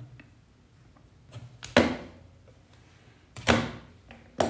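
Hand tools and a power adapter's cable handled on a desk: two sharp clicks about a second and a half apart, the first likely side cutters snipping through the adapter's low-voltage cable.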